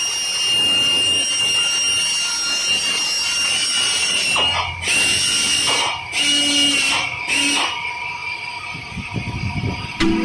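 Pneumatic drill running with a steady high whine as it drills sheet metal; about halfway in come several short, harsher bursts of noise, each under a second long.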